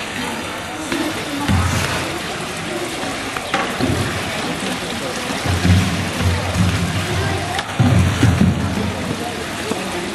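Indistinct chatter of onlookers in several short bursts over a steady hiss of background noise.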